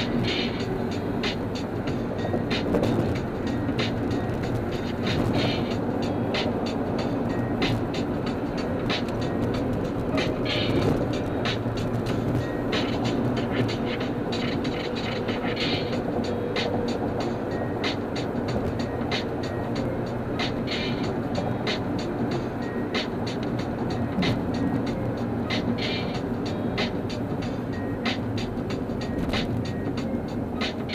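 Steady road and engine noise inside a car travelling on a freeway, with music playing over it.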